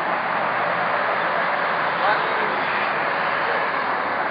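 A steady rushing noise with faint, indistinct voices of people talking under it.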